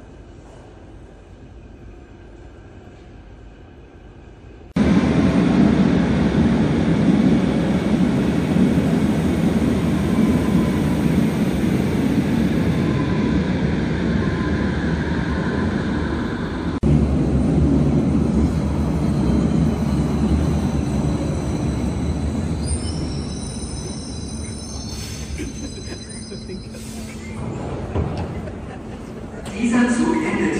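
Berlin U-Bahn train running in an underground station: a loud rumble of wheels and motors that starts abruptly about five seconds in. It eases off in the last few seconds, with high squeals sliding down as the train slows.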